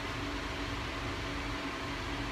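Steady mechanical hum and hiss with a faint constant low tone, unchanging throughout.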